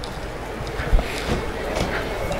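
Busy city shopping-street ambience: steady street noise with faint voices of passers-by, and a single knock about a second in.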